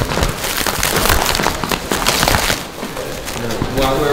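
Foam packing wrap rustling and crackling as it is pulled and peeled off a resin bar top. The sound is dense for about two and a half seconds, then eases.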